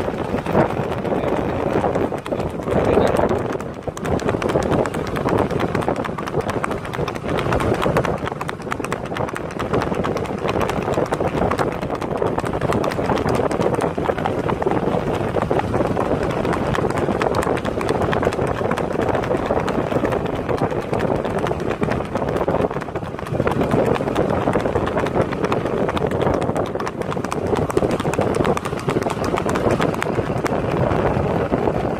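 A horse's hooves beating rapidly and continuously on a dirt road as it runs at speed under a rider, heard over a steady rushing noise.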